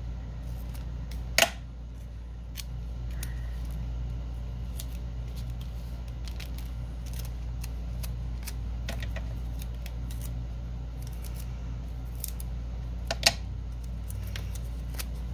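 Scissors snipping strips of tape. Two sharp snips stand out, one about a second and a half in and one near the end, with small ticks and clicks of handling between, over a steady low hum.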